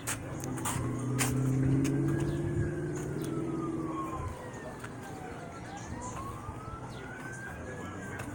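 An emergency-vehicle siren wailing, its pitch slowly rising and falling about twice. A low engine drone runs under it and fades out about halfway through, and a few sharp knocks come near the start.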